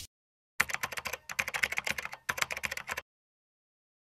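Keyboard typing sound effect: rapid key clicks in three short runs, starting about half a second in and stopping about a second before the end, with dead silence around them.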